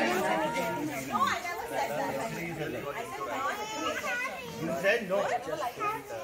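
Several people talking at once, their voices overlapping in chatter.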